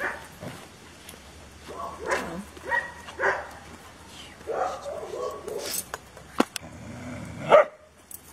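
A dog barking in several short, separate barks, the loudest near the end.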